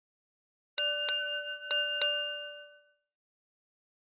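A bell struck four times in two quick pairs, each strike ringing on briefly and fading out.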